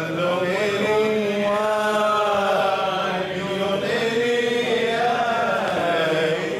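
Unaccompanied male singing of a Jewish liturgical hymn (piyyut) in a slow, ornamented melody with long held, gliding notes.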